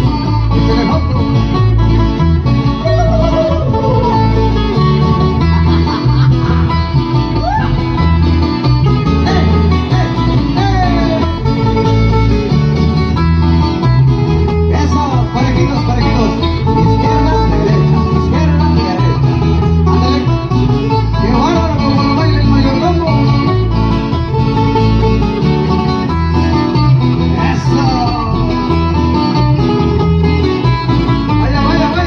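Live dance band music played loud over a sound system, with a steady, regular bass beat and melody lines, some sliding in pitch, running over it without a break.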